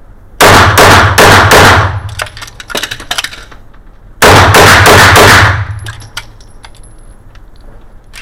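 A single-stack semi-automatic pistol firing two quick strings of several shots each, one just after the start and one about four seconds in. The shots are very loud and ring on in the small indoor range.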